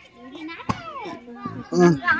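Women and a child talking, with one sharp click partway through and a louder voice near the end.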